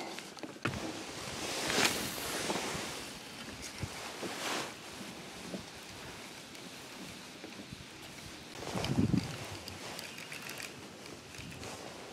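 Quiet handling sounds of fishing with a rod and reel from a small boat: a soft swish about two seconds in, a smaller one a couple of seconds later, and a rustling swell near the three-quarter mark over faint outdoor background noise.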